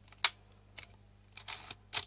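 Mechanical clicks of an Olympus 35 RD rangefinder as it is wound and fired: a sharp click about a quarter second in, a fainter click, a short rasping stroke of the film advance lever around a second and a half in, and another sharp click near the end.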